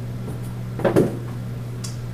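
A single short clunk a little before the middle, over a steady low hum.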